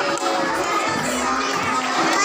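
A crowd of primary schoolchildren shouting all at once, many voices overlapping in a dense, steady din.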